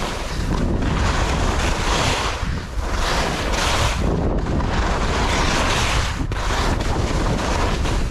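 Skis hissing and scraping over firm snow during a descent, swelling and fading with each turn, under heavy wind buffeting on the camera microphone.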